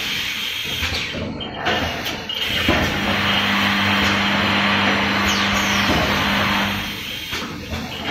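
Glass-bottle filling and capping line running, with bottles clinking and the flip-top capper clattering. From about three seconds in to about seven seconds a loud steady hiss with a low hum rises over the clatter, then dies away.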